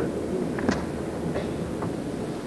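Steady hiss and low hum of an old recording's background noise during a pause, with a few faint clicks.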